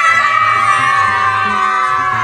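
Several young people and a child screaming together in one long, high shriek held steady, easing off slightly near the end.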